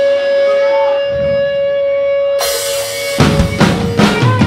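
Live rock band: a held electric guitar note rings out, a cymbal wash comes in a little past halfway, and the full drum kit crashes back in near the end.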